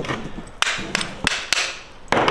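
Hammer striking a screwdriver set inside a diamond core bit: five sharp metallic knocks in under two seconds, driving out rings of porcelain tile stoneware jammed tight in the bit.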